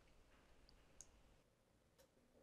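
Near silence, with a single faint mouse-button click about a second in.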